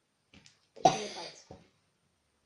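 A child coughing once, a sudden loud burst about a second in, with a faint breath just before it.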